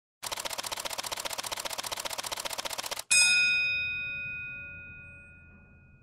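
Title-sequence sound effect: a fast, even ticking for about three seconds, cut off by a single loud bell-like ding that rings on and slowly fades away.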